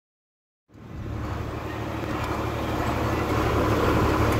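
Silence for the first moment, then a John Deere tractor's engine running steadily, heard from inside the cab as it drives across a field, slowly growing louder.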